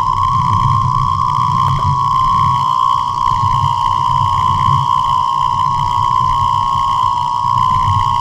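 Shortwave radio receiving electromagnetic interference from a household appliance's DC motor, carried through the house wiring: a loud, steady high whine over a rough low buzz.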